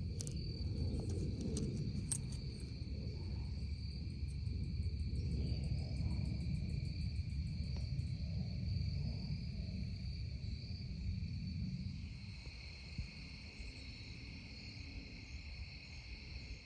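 Insects chirring steadily at two high pitches over a low rumble on the microphone, with a few sharp clicks in the first couple of seconds; the rumble fades away near the end.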